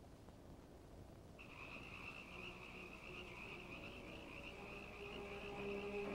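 Night chorus of frogs, a steady high chorus that starts suddenly about a second and a half in. Faint orchestral music begins to rise beneath it near the end.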